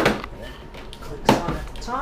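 Two sharp plastic knocks, about a second and a quarter apart, as the iMac G3's translucent plastic housing is pushed and snapped into place; the second is the louder.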